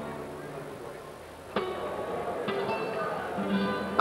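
Music: a plucked string instrument plays a few separate notes, about one and a half, two and a half and three and a half seconds in, each ringing on after it is struck.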